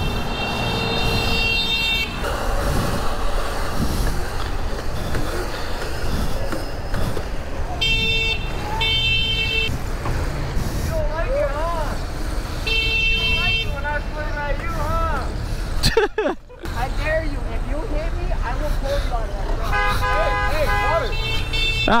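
A vehicle horn honking repeatedly in traffic: a long blast of about two seconds at first, two short blasts a while later, then further honks.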